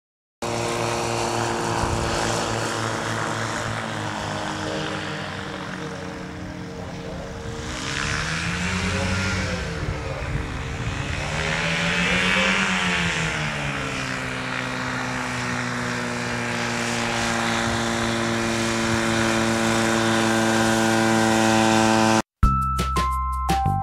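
Quicksilver MX ultralight's two-stroke engine and pusher propeller running, the engine note rising and falling back twice in the middle, then holding steady.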